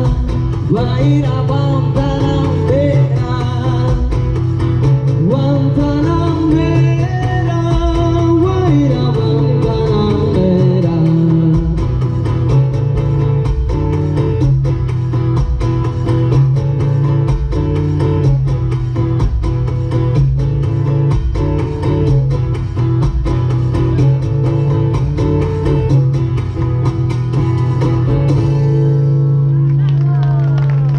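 Live acoustic guitar, strummed steadily through a PA, with a woman singing a melody over it in roughly the first third. The voice then drops out and the guitar strumming carries on alone to close the song.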